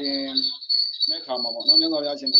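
A man speaking, pausing briefly about half a second in and then going on, with a steady high-pitched whine running underneath throughout.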